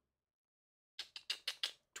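A second of dead silence, then a quick run of about six faint clicks in the last second.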